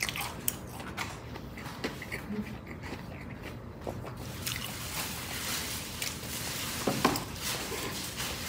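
Eating and food-handling sounds: a plastic sauce packet being squeezed out over a fried chicken sandwich, with a few soft clicks in the first couple of seconds and chewing.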